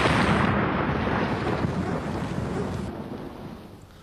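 Explosion rumble, loud at first and dying away steadily over about four seconds: the aftermath of a bomb blast.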